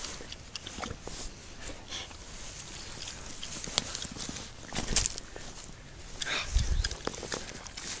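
Footsteps crunching and rustling through snow and dry grass, irregular, with a couple of louder crunches about five and seven seconds in.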